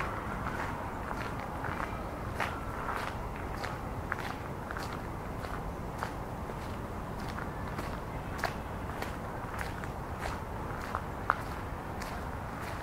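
A walker's footsteps on a park path, about two steps a second, over a steady low hum of the city. There is one sharper, louder click near the end.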